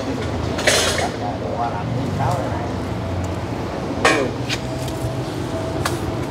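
Handling noise from a potted bonsai being worked by hand: a few brief rustles and clicks as the foliage is pushed aside and a cloth tape measure is wrapped around the trunk. A steady low hum runs underneath, with faint voices.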